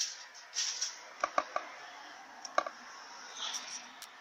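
Faint handling noise from working on parts under the car: a quick run of three or four light clicks with small metallic clinks about a second in, one more click a second later, and soft rustling.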